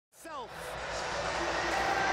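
Stadium crowd noise from a televised football match, swelling steadily, with a short falling voice-like sound right at the start.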